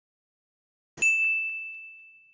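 A bright, single-pitched ding sound effect struck about a second in, with a couple of lighter sparkles just after it, ringing on and fading away slowly.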